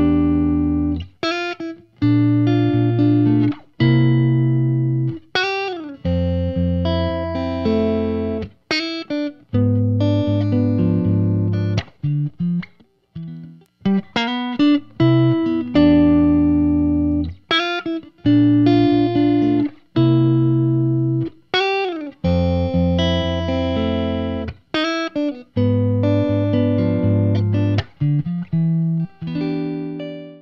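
Electric guitar, a Fender Stratocaster on its neck pickup, playing a passage of chords and single notes with string bends. It is heard first through a Lollar Tweed neck pickup, then, after a short break about 13 seconds in, the same passage is played through a Lollar Blond neck pickup.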